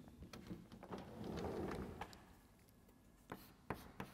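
Faint rustling and soft handling knocks, then a couple of light, sharp taps of chalk against a blackboard near the end.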